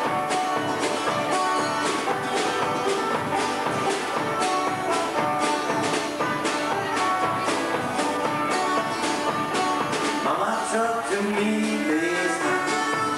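Live country band playing an up-tempo number on guitars and drum kit, with a steady beat. A melody line comes forward near the end.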